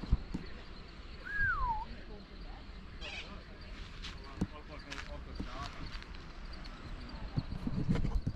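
A bird gives one clear whistled note that slides down in pitch about a second and a half in, over a faint steady outdoor background, with a few fainter short calls later.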